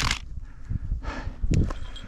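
Footsteps crunching on a gravel hiking trail, uneven scuffs over a low rumble, with a loud scuff at the start and a sharp knock about one and a half seconds in.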